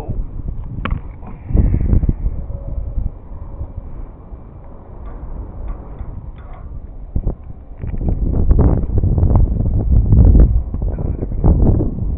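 Wind buffeting the camera's microphone, a low rumble that gusts up about one and a half seconds in and again, longer and louder, from about eight to eleven seconds, with a few faint clicks between.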